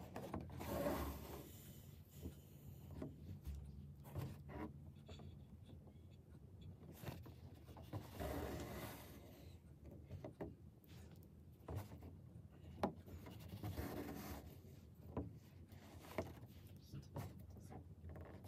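Embroidery needle and thread drawn through taut cotton twill stretched in a wooden hoop: faint, scratchy rubbing swishes, the three longest about a second in, around eight seconds and around fourteen seconds, with small ticks of the needle between them.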